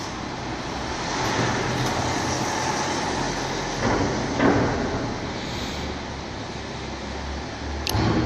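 Another car driving through the concrete underground garage: a steady echoing rumble of engine and tyres, with a deeper low drone joining about three seconds in.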